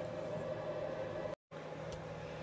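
Drill running steadily, spinning an armature for commutator dressing, with a steady hum. It cuts off suddenly about 1.4 s in, leaving a faint low hum.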